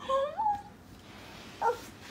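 A high-pitched voice making two short rising calls at the start and a brief one about a second and a half in.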